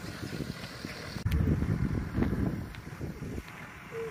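Wind buffeting the microphone: an uneven low rumble that swells about a second in and eases off near the end, with a couple of faint clicks.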